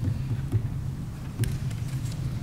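Steady low hum of meeting-room noise picked up by the microphones, with two light clicks, one about half a second in and one near a second and a half, as of papers or objects being handled on the dais.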